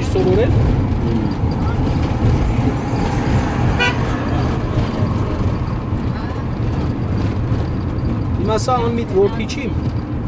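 Steady low rumble of a car's engine and tyres heard from inside the cabin, with a short horn toot about four seconds in.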